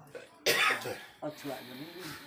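A woman speaking, with one loud cough about half a second in that stands out above her voice.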